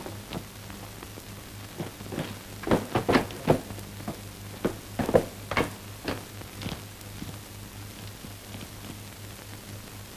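About a dozen short, irregular knocks, bunched between about two and seven seconds in, over the steady low hum and hiss of an old optical film soundtrack.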